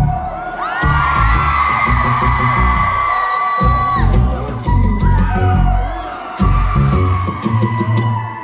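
Amplified live music with a heavy, pulsing bass beat, and a crowd of fans screaming and whooping over it in high, overlapping cries.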